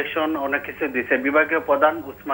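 Speech only: a person talking continuously.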